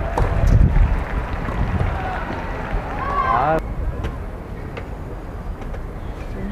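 Wind buffeting the microphone, loudest in the first second, with a nearby person's voice about three seconds in. A few sharp clicks of tennis balls struck by rackets during a rally.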